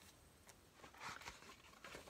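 Near silence, with faint rustles and light taps of paper as pages of a handmade journal are turned, a few of them about a second in.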